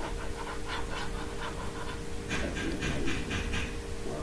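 Stylus rubbed back and forth on a tablet screen while erasing handwriting, giving a run of short scratching strokes about three to four a second that grow louder in the second half.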